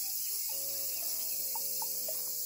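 Dense insect chorus, a steady high hiss, under soft background music of held, stepped notes.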